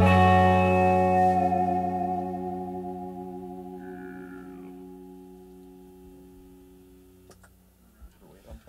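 Final chord struck on electric guitars through amplifiers and left to ring out, fading steadily over about seven seconds until it is cut off with a couple of small clicks.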